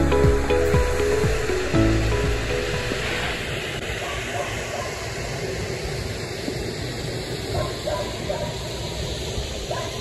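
Background music fading out over the first two seconds, giving way to the steady rush of river water flowing over a stony bed.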